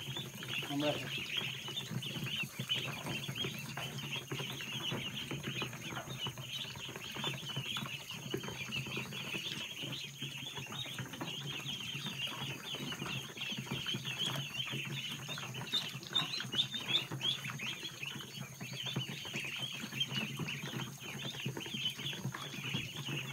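A crowd of Khaki Campbell ducklings peeping: many short, high calls overlapping in a continuous chorus.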